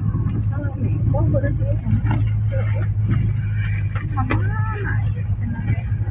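Car engine running steadily at low road speed, heard from inside the cabin as an even low drone, with quiet talk over it.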